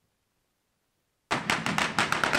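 Silence for just over a second, then a sudden burst of rapid, loud bangs and hits.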